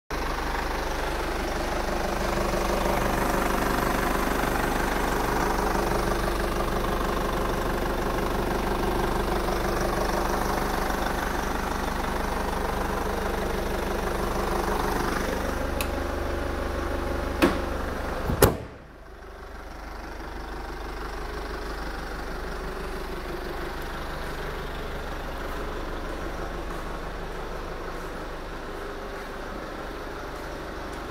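2005 Kia Sportage engine idling steadily with the hood open. About two-thirds of the way through, two sharp clicks come, and the sound drops suddenly to a quieter, steady hum.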